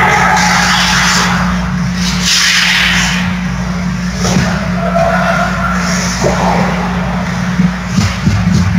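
Ice hockey skate blades scraping and carving on rink ice during play, with a couple of sharp clacks about four and six seconds in, over a steady low hum.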